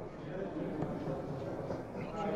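Faint murmur of background voices with no distinct event.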